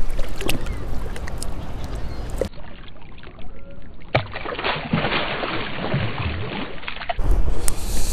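Wind buffeting the microphone and lake water sloshing beside a boat, with a splash as a smallmouth bass is let go back into the water.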